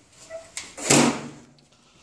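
A single sharp knock about a second in.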